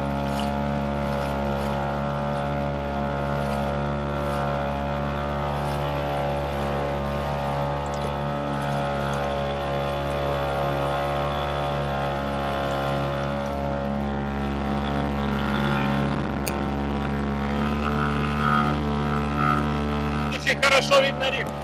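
Small outboard motor on an inflatable dinghy running at a steady cruising speed, a constant hum that holds one pitch throughout.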